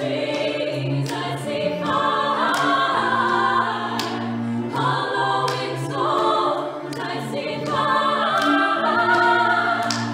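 Four female voices singing in harmony, phrase after phrase, over two cellos holding long, low notes.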